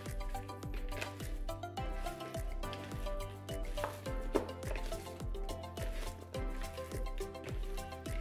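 Wet squishing and slapping of raw chicken wings being tossed and squeezed by hand in sesame oil in a plastic bowl, with background music and a steady beat throughout.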